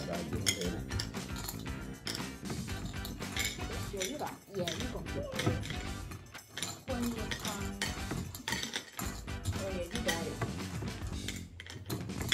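Small hard-shelled chewy candies clicking and rattling against the sides of a glass bowl as fingers dig in and pick them out one at a time: a rapid, irregular run of light clinks.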